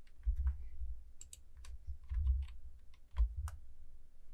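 Computer keyboard and mouse clicks: a loose scatter of light, irregular key taps and clicks, some with a dull low thump, the sharpest a little after three seconds in.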